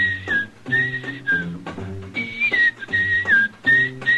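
A radio commercial jingle: a man whistling a bright melody that steps and glides up and down, over a small jazz band with a plodding bass line.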